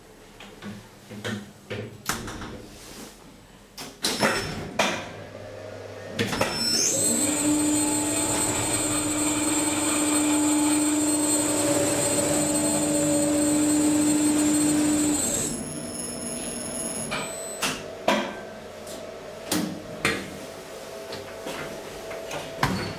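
Platform lift's drive running steadily for about nine seconds as the car travels, a low hum with a high whine over it, starting and stopping abruptly. Clicks and knocks from the lift door and handling come before and after the run.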